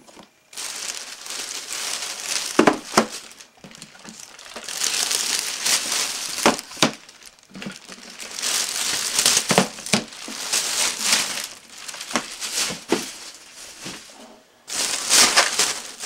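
Thin plastic shopping bag rustling and crinkling as hands rummage through it, in repeated bursts with sharp crackles, loudest again just before the end.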